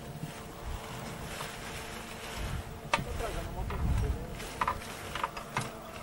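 Wind buffeting the microphone in gusts, with faint voices and a few sharp knocks, the loudest about halfway through.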